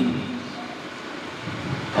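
Steady, even background noise without pitch, with the echo of the last spoken word fading out over the first half second.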